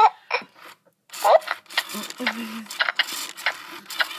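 A Baby Alive doll's electronic eating sounds from its speaker: after a brief silent gap, a run of quick smacking, slurping clicks starting about a second in, with a short rising vocal sound and a brief hummed 'mmm'.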